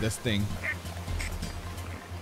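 Anime soundtrack: a brief shouted word near the start, then soft background music over a low steady hum.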